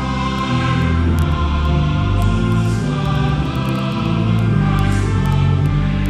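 Background choral music: a choir singing held chords that change every second or so.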